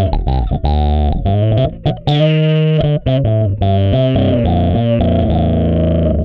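Electric bass played through the Ashdown SZ Funk Face, a tube-driven overdrive and auto-wah pedal, with a dirty, distorted tone. It plays a funky riff of quick repeated notes and longer held notes.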